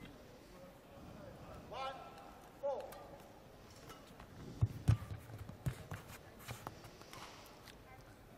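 Badminton rally: a racket strikes a shuttlecock several times, with players' feet thudding on the court, loudest about halfway through.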